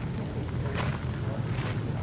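Wind buffeting the camera microphone, a steady low rumble, with soft footsteps about once a second while walking along a dirt path.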